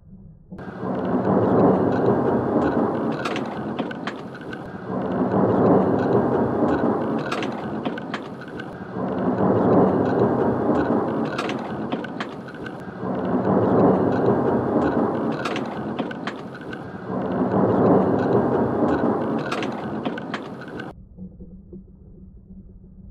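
Thunder rumbling in five swells about four seconds apart, each rising quickly and fading away, with scattered sharp clicks. It starts abruptly about half a second in and cuts off suddenly shortly before the end.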